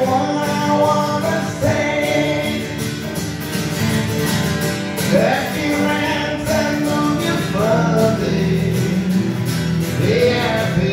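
Two acoustic guitars strumming chords together, with a man's voice singing a melody over them.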